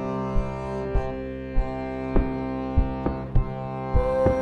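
Piano accordion holding steady chords over a beat of percussion hits made from accordion samples, about one hit every half second or so.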